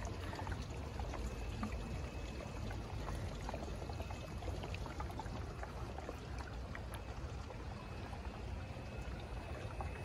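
Water trickling and pouring steadily through an aquaponics system.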